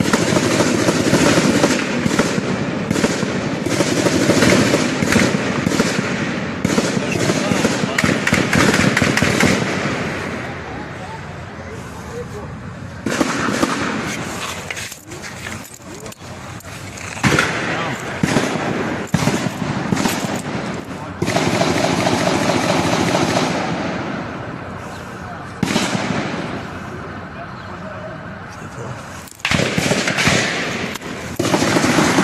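Repeated bursts of automatic gunfire, loud and rapid, in several long volleys with brief lulls between them.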